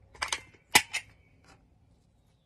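Sharp clicks and knocks from a caulk tube being handled while caulking a corner joint: a pair near the start, the loudest pair just under a second in, and a fainter one about a second and a half in.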